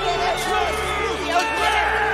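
Men shouting excitedly in celebration, with a cheering crowd, over background film music.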